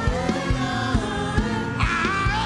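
Live gospel worship music: a group of singers on microphones, with a band keeping a steady drum beat of a little over two beats a second.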